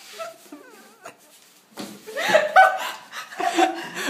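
A woman laughing, quietly at first and then louder from about two seconds in.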